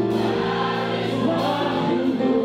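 Gospel praise and worship music: a male lead singer sings into a microphone over long held backing chords and choir voices.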